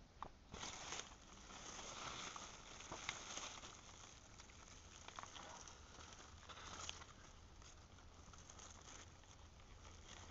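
Faint rustling and crackling of cucumber leaves and vines brushing against the phone, with light handling noise, a little louder in the first few seconds.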